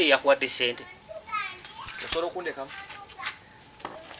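Mainly speech: men talking, in short bursts, with other voices faintly behind them.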